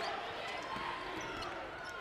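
Faint court sound of a live basketball game: a steady crowd murmur with soft thuds of the ball being dribbled.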